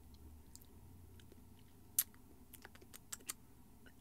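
Faint lip smacks and mouth clicks as freshly applied lip gloss is pressed between the lips and tasted. A sharp click comes about halfway through, then a few quicker ones near the end.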